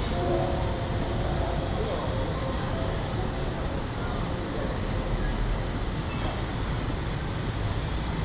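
Steady city street noise: a continuous low traffic rumble, with faint voices over the first few seconds.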